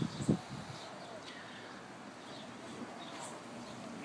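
Quiet outdoor background with a short knock just after the start.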